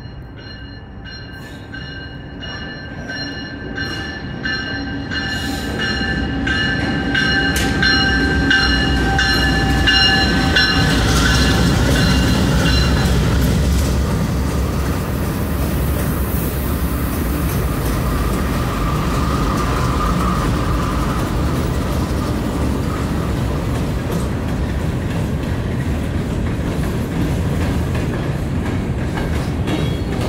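Norfolk Southern freight train passing close. A locomotive horn sounds a steady multi-note chord for roughly the first thirteen seconds while the diesel locomotives approach and rumble by, getting louder. After that, covered hopper cars roll past with an even clickety-clack of wheels on the rails.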